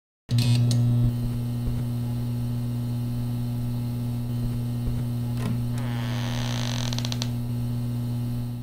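Sound design for a logo animation: a steady low electrical hum that switches on suddenly with a click just after the start. About six seconds in, a door creaks as it swings open.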